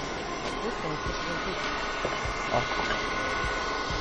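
Electric stand mixer running steadily, beating egg yolks and sugar, a constant motor whirr with a faint whine.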